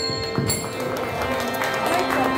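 Music with steady held tones and a few jingling metallic strikes that die away within the first half second, over crowd chatter.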